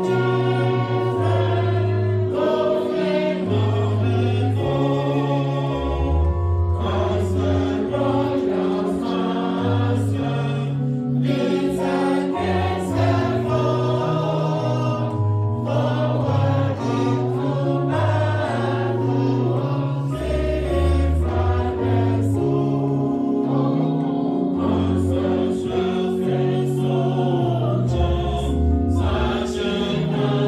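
A church choir and congregation singing a hymn together over steady held bass notes that change with the chords.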